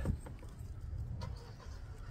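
A pause in speech filled by a low, steady background rumble, with a faint tick about a second in.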